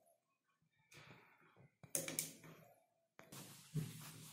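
Faint clicks and rustles of jumper wires being pulled off and pushed onto header pins on a plastic robot chassis, in a few short separate bursts about one, two and three seconds in.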